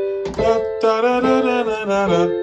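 Electronic keyboard in a piano voice playing held chords from a C major, G major, A minor, F major pop progression, with a new chord struck about a third of a second in and left to ring.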